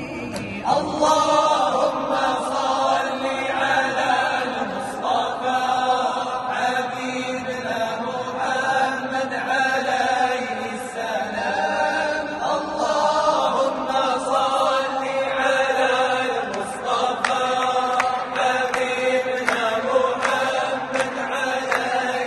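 Group of men chanting together a cappella, a continuous Moroccan devotional chant with held, ornamented notes and no instruments.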